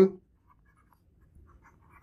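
Faint, light scratching and tapping of a stylus writing on a tablet screen, in short scattered strokes.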